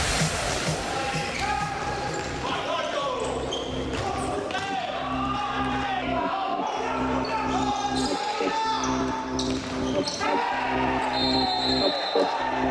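Futsal ball being kicked and bouncing on a hard sports hall court, with players' voices calling out across the hall.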